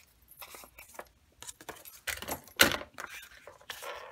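Scissors snipping through a kraft paper envelope and the paper rustling as it is handled, with one louder clack about two and a half seconds in.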